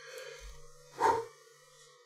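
A man's short breath about a second into a pause in his talk, over a faint steady hum. He is out of breath.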